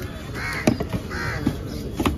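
A crow cawing twice, with sharp knocks of a cleaver chopping through fish meat onto a wooden block; the loudest chop falls between the two caws.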